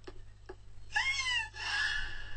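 A short meow-like call that rises and then falls in pitch, lasting about half a second, preceded by two faint clicks.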